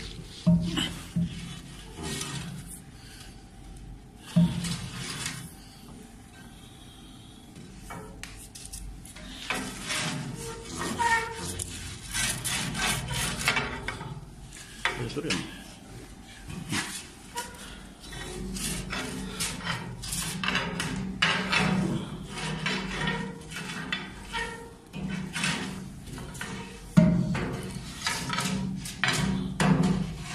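A metal scraper or small shovel scraping and knocking thick soot and unburned-fuel deposits out of an oil-fired boiler's firebox, in repeated rough scrapes and clinks. The deposits come from fuel that was not burned and built up inside the boiler.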